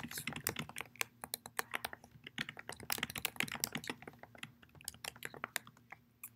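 Typing on a computer keyboard: a run of irregular key clicks, several a second.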